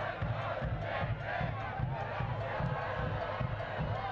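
Soccer stadium crowd: a steady noise of many voices, with no single event standing out.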